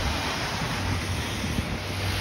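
Steady street noise of traffic on a wet road, a hiss of tyres over a low rumble, with wind on the microphone.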